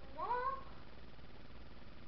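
A single short vocal call, rising in pitch and lasting about half a second, near the start.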